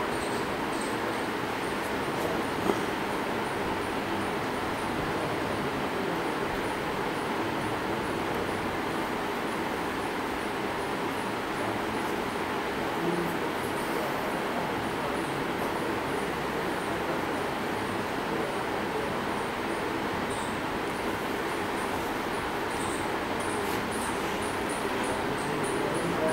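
Small DC motor of a speed-control trainer running at low speed: a steady, even whirr with no clear change in pitch as its speed is slowly raised.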